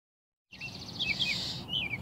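Birds chirping: a few short, falling chirps, starting about half a second in.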